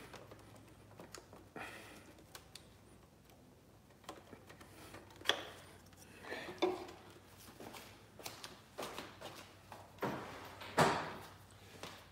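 Scattered plastic clicks, knocks and rustles as a car's plastic rear light unit is unclipped and pulled away from the bumper by hand, with a few louder knocks near the middle and near the end.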